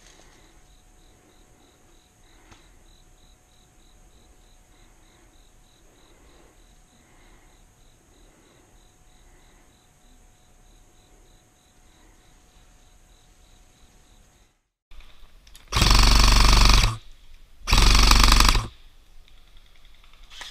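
Low outdoor background with faint, regular ticking, then after a cut two loud bursts of full-auto fire from an airsoft electric rifle (AEG), each about a second long, near the end.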